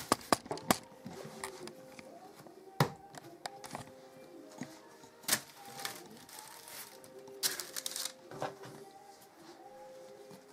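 Faint background music, broken by a handful of sharp knocks and rustles from shaped white bread dough loaves and baking parchment being handled on a baking tray.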